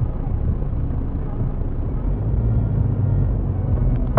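Steady low rumble of traffic picked up inside a car by its dashcam. A tipper semi-trailer truck passes close alongside, and the car moves off.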